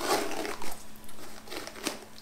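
A hairbrush drawn through long hair in a few rustling strokes, with a sharper scratch near the end.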